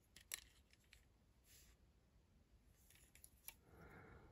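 Near silence with a few faint, sharp clicks of plastic Lego bricks being handled and pressed together as a bamboo-log piece is attached. The sharpest click comes about a third of a second in.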